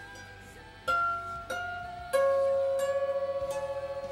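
Strings of a lap harp plucked one by one from highest to lowest, each note ringing on; the harp is extremely out of tune. Three louder plucks fall about a second in, a second and a half in and just past two seconds, each lower than the last, the lowest ringing longest.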